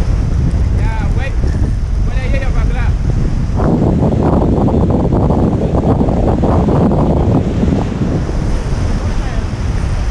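Wind buffeting the microphone over waves washing against shoreline rocks, with a louder surge of surf in the middle, from about a third of the way in to about eight seconds.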